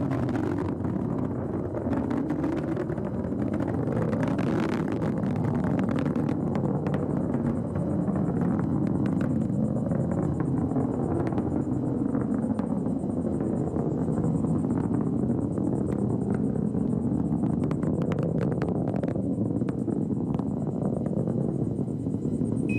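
Atlas V rocket with its solid rocket boosters burning during ascent: a steady deep roar with intermittent crackle.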